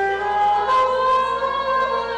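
A slow hymn sung in long, held notes, moving up to a new note about half a second in.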